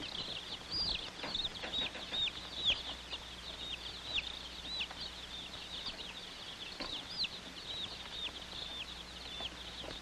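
Baby chicks peeping inside a ventilated cardboard shipping box: a steady stream of short, high cheeps, about two a second, with now and then a faint knock.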